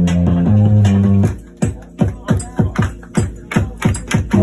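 Live rock band: a loud sustained guitar and bass chord rings, then cuts off about a second in for a stop-start run of heavy, quickly falling low drum hits, about three a second.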